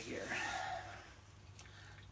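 A man's voice trailing off the end of a spoken question into a breathy exhale, then quiet room tone with a low steady hum.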